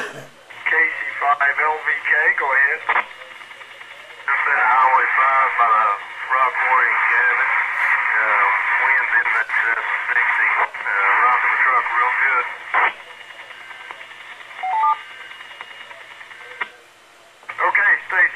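Voice traffic over a two-way radio, heard through a handheld radio's small speaker: thin, narrow-band voices in a few transmissions, with short gaps and clicks between them.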